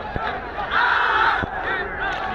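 A squad of men giving one loud shout together, held for about half a second near the middle, as part of a synchronized PT drill. A thump comes just before and just after the shout, over steady crowd noise.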